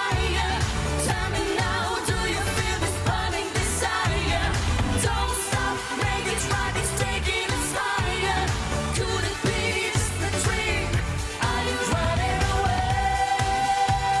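Live pop song with a pulsing dance beat and singing. From about twelve seconds in, one long note is held steady over the beat.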